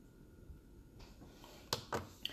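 Quiet room tone, broken near the end by two sharp clicks close together: handling noise.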